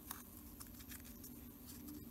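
Faint clicks and light handling noise from a small clothespin being opened and clipped onto a glued pipe-cleaner ring to clamp it, over a low steady hum.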